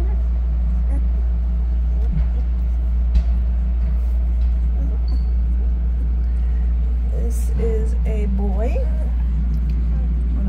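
A steady low hum throughout, with a week-old puppy whimpering in high, wavering squeaks about seven to nine seconds in. There are a couple of soft knocks in the first few seconds.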